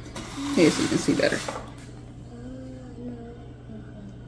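A voice making a short, loud, wordless sound about half a second in, followed by faint held notes near the end.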